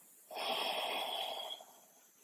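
A person breathing audibly, with one long, airy breath of about a second beginning shortly after the start.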